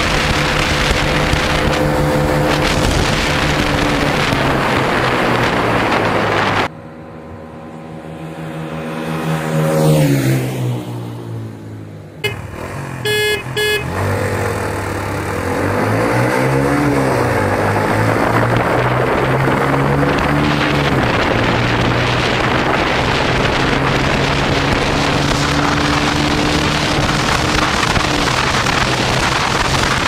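Onboard sound of a Honda CB150F's single-cylinder engine being ridden hard, under heavy wind noise on the microphone. Its note climbs and dips with the revs and gear changes, and falls away in a quieter stretch about a quarter of the way in.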